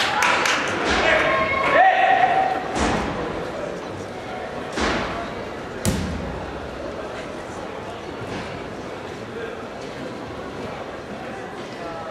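A martial artist's stamps and landings on the competition carpet: several sharp thuds in the first six seconds, each echoing through a large hall. A voice sounds briefly in the first two seconds, and a steady hall background follows.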